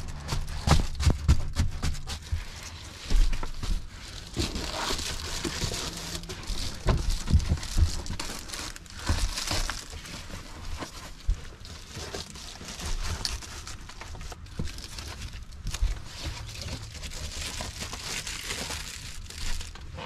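Reflective foil window covers crinkling and rustling as they are handled and pressed into the windows of a minivan, with irregular bumps and knocks.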